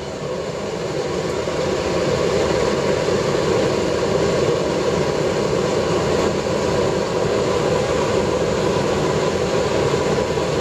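Waste-oil burner made from a fire-extinguisher casing running hard, its flame and jumping-castle air blower making a steady rush. It grows louder over the first two seconds as the burner is turned up, then holds steady.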